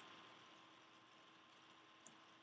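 Near silence: faint room tone and hiss in a pause between spoken sentences.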